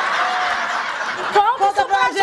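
Studio audience laughing after a punchline, a dense wash of crowd laughter that gives way about one and a half seconds in to a voice beginning to speak.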